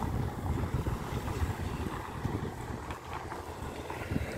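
Wind buffeting the microphone of a handheld phone, an uneven low rumble.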